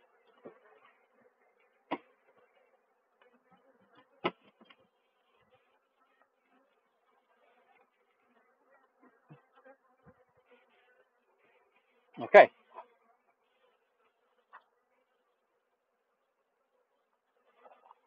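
Honeybees buzzing faintly around an open hive, with a few sharp knocks from the metal-covered hive lid being handled and set back on. The loudest knock comes about twelve seconds in.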